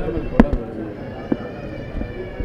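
A single sharp knock or pop about half a second in is the loudest sound. Two fainter knocks follow, over a faint, steady high-pitched tone in the background.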